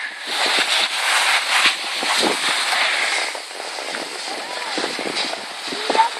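Skis scraping and hissing over packed, ridged snow while the skier descends, a crackly rush that is loudest for the first half and then eases off.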